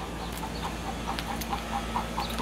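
Backyard hens clucking: a quick run of short repeated clucks, about five a second, starting about half a second in.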